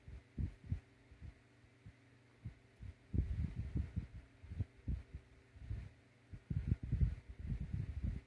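Irregular, muffled low puffs of breath on the microphone as a man draws on a cigar and blows out the smoke. The puffs are sparse at first and come thicker in the second half.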